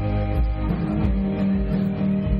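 Live rock band playing with electric guitars, bass and drums, steady and loud.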